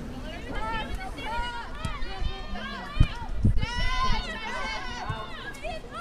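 Several high voices shouting and cheering over one another at a soccer match, with a sharp thump about three seconds in, the loudest sound.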